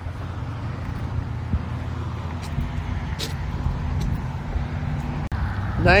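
A vehicle engine idling: a steady low hum with a few faint clicks over it.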